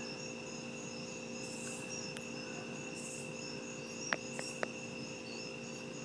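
Night insects chirping steadily: a continuous high trill with quicker pulsing chirps above it, over a faint low hum. Three short clicks come just after four seconds in.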